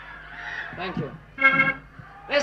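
A man's voice making short, nasal, vowel-like sounds, one held briefly about three-quarters of the way through, over a faint hiss on an old broadcast recording.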